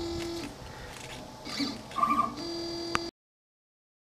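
Stepper motors of a Shapeoko CNC machine moving the gantry from one dot position to the next: short steady whines that stop and start with pauses between moves, cutting off abruptly about three seconds in.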